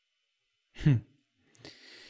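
A man's short, thoughtful "hmm", followed about half a second later by a soft, breathy exhale.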